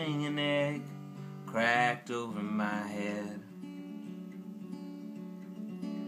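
Acoustic guitar strummed in steady chords, with a man singing short phrases over it in the first three seconds. After that the guitar plays alone and more quietly.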